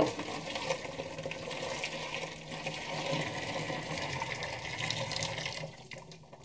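Boiling water poured in a steady stream from an electric kettle into a plastic fermenter, splashing into the bucket; the pour stops just before the end.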